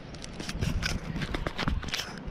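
Footsteps on dry dirt ground close to the camera: an irregular series of short scuffs and clicks, about four a second, over a low rumble.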